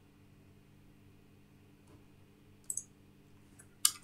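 Quiet room tone with a faint steady hum, broken by two short clicks of computer input, one a little under three seconds in and one near the end.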